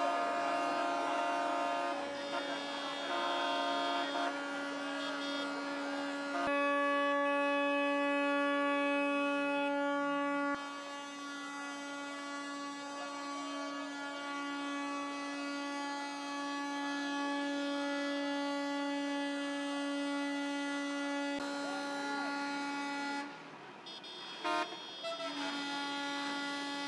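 Tractor horn blaring in one long, steady note over the voices of a crowd. The note drops out for about two seconds near the end, then sounds again.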